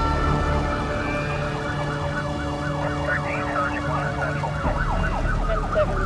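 Emergency vehicle siren sounding a fast yelp, its pitch sweeping up and down several times a second, over a low steady rumble.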